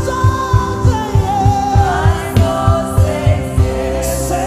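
Live gospel worship music: held, gliding sung notes over a band with a steady, fast low drum beat of about three to four beats a second.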